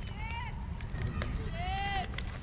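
Two distant shouted calls: a short one just after the start and a longer one rising in pitch near the end, over a steady low background rumble.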